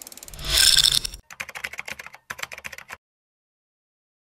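Logo-reveal sound effects: a bright swelling whoosh in the first second, then a rapid run of fine ticks and clicks that cuts off suddenly about three seconds in.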